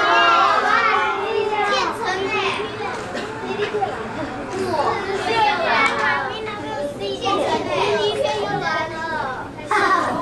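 A crowd of children talking and calling out at once, many overlapping young voices.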